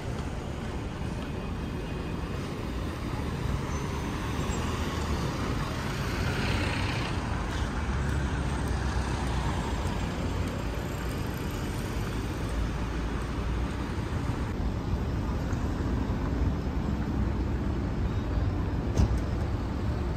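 City street traffic: cars driving past at low speed, a steady low rumble with one car swelling louder about a third of the way in. A single sharp click near the end.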